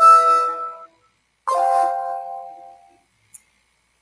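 Two electronic chimes from the Yahoo Fantasy Football draft room, about a second and a half apart, each a cluster of steady tones that fades out: the first sounds as a player's sale is confirmed, the second as the next player comes up for bidding.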